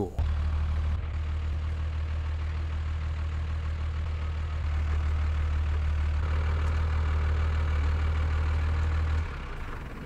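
Crane service truck's engine running steadily at idle, a deep low drone, which drops away about a second before the end.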